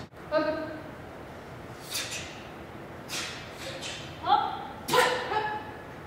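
A boy's short, sharp shouts (kiai) while performing a taekwondo form: one just after the start and two more a little after four and five seconds in. Between them come brief snaps of his uniform from punches and kicks.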